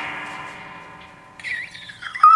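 A distorted electric guitar's last chord ringing out and fading away. Near the end a short high wavering squeal starts.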